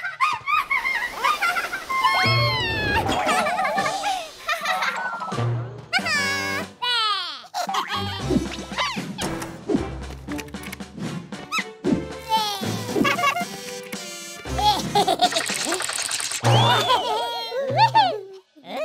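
Children's cartoon music with the characters' wordless babbling, squeals and laughter, and comic swooping sound effects about six seconds in.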